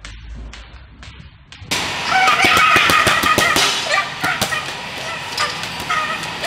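Heavy punching bag being kicked: a quick run of sharp smacks over a busy, noisy background, with high-pitched calls mixed in. It starts suddenly after about a second and a half of near quiet.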